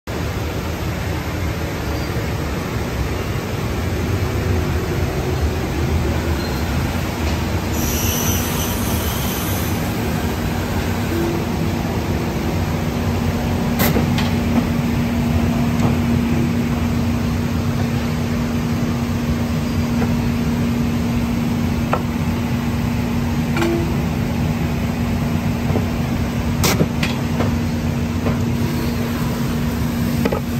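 Polar 176 ED paper guillotine running idle in a print shop: a steady machine hum, joined about eight seconds in by a steady low drone, with a few sharp clicks.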